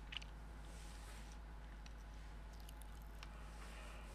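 Faint handling of vinyl upholstery at an industrial sewing machine: soft crinkles and a few small clicks as the pieces are shifted and lined up under the presser foot, over a low steady hum.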